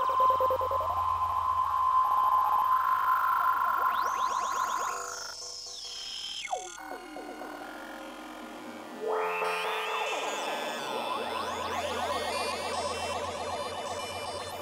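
Eurorack modular synthesizer playing ambient glitch music: a held tone with sweeping pitch glides over a low drone, thinning out and falling away in the middle with a single sharp blip, then a dense layer of stacked tones sweeping in about nine seconds in.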